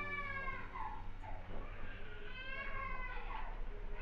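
A cat meowing twice, each call rising and then falling in pitch: one fades out about a second in, the other runs from about two seconds to three and a half.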